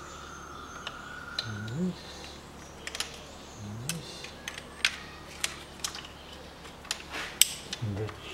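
Irregular sharp clicks and taps of small metal parts being handled and fitted by hand on an engine's valve cover, the loudest one near the end. Twice early on there is a short, low vocal sound.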